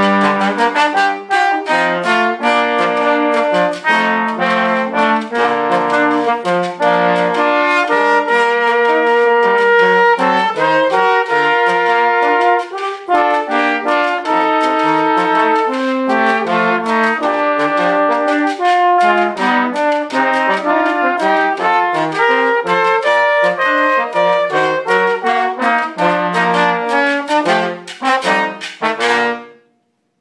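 Trombone ensemble playing an arrangement in several parts at once, with busy rhythmic lines over lower held notes. It closes with a run of short chords and stops just before the end.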